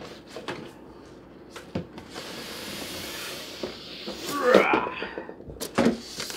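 A foam-packed 3D printer being hauled out of a cardboard box: foam and cardboard rubbing and scraping against each other, loudest about four and a half seconds in, with a few knocks, one sharp one near the end.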